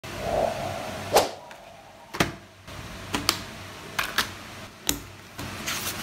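Hands handling a clear plastic journal binder and its paper: a series of sharp clicks and taps, roughly one a second, with light crinkling near the end.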